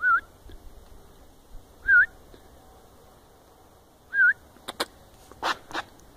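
A person whistling to call a dog: three short whistles about two seconds apart, each with a quick up-and-down wiggle in pitch. Four sharp clicks follow near the end.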